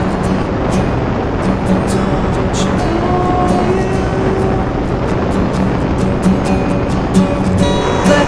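Background music: the instrumental part of a song with a steady drum beat, without vocals.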